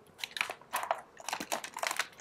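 Hands scooping and pressing potting soil into a small plastic pot around a tomato seedling: a run of short, irregular crunching and rustling sounds.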